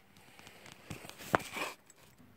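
Faint rustling and scraping handling noise with a few small clicks, and one sharp click a little over a second in.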